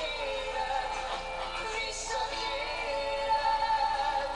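A male–female vocal duet with band backing, playing from a laptop's speakers, with long held sung notes.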